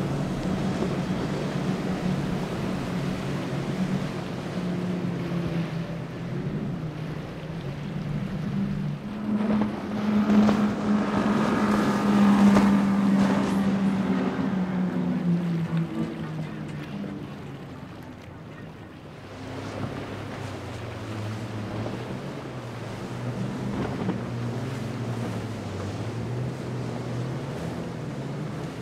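Outboard-powered boats running past at speed, one after another. A steady engine drone swells to its loudest about twelve seconds in, when the Donzi with twin Mercury 225 hp outboards passes, then fades. A lower-pitched engine drone builds in the last third, all over the wash of hulls slamming spray and wind.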